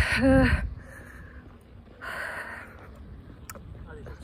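A woman's voice trails off on a word, then a running woman's breathing: one breathy exhale about two seconds in, over a low rumble.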